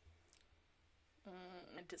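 Near silence, then a voice starting to speak in the last moments, with a short click just before the end.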